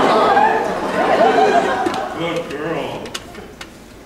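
A theatre audience reacting with many voices at once, chatter and laughter. It is loud at first and fades away over about two seconds.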